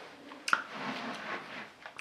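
A person's mouth sounds while tasting beer: a sharp lip or tongue click about half a second in, then a soft breathy exhale.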